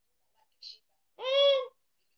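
A person's short, high-pitched vocal call, like an 'ooh', about half a second long, rising then falling in pitch, just after the middle; a faint hiss comes shortly before it.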